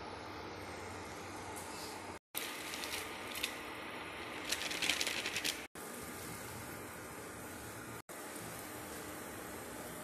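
Steady hum of an induction cooktop's cooling fan, with a run of light clicks and rattles from about two and a half to five and a half seconds in.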